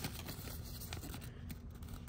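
Faint rustling and a few light crinkles of a folded paper leaflet being handled and unfolded.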